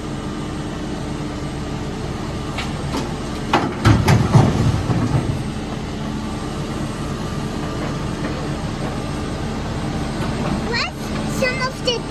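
Caterpillar backhoe loader's diesel engine running steadily as the backhoe arm digs, with a loud burst of knocking and scraping from the bucket about four seconds in.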